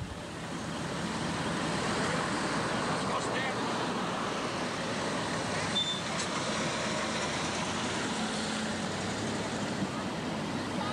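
Parade street sound picked up by a camcorder microphone: slow vehicles rolling past, with indistinct voices of onlookers. A brief high tone sounds about six seconds in.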